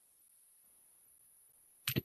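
Near silence, then a couple of sharp clicks near the end.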